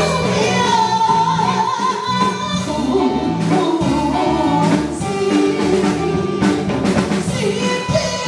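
Taiwanese opera (gezaixi) singing into a handheld microphone, amplified over a PA, with a long wavering sung line over instrumental accompaniment.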